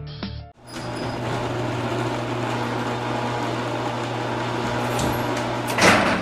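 A steady droning sound bed with a low hum, swelling loudly near the end and then cutting off.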